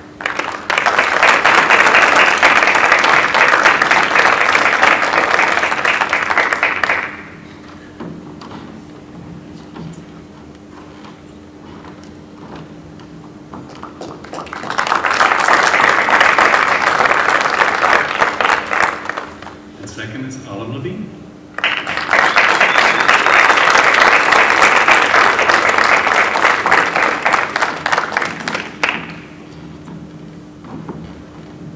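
Audience applauding: three rounds of clapping, the first and last about seven seconds long and a shorter one in the middle, with quieter pauses between.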